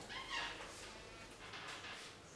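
A short, faint vocal sound about a third of a second in, then quiet room noise with faint handling as a mobile phone is taken up in the hands.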